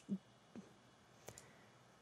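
Near silence: room tone with two faint clicks, one about half a second in and one just over a second in.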